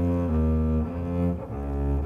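Double bass played with the bow, a line of sustained low notes that changes pitch every half second or so, with a brief dip about a second and a half in.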